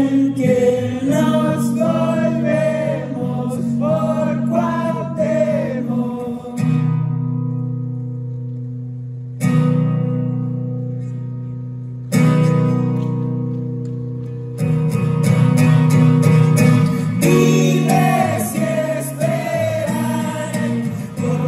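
A male singer singing live with a strummed acoustic guitar. In the middle the voice stops and four single guitar chords are struck and left to ring out and fade, a few seconds apart, before the singing comes back in.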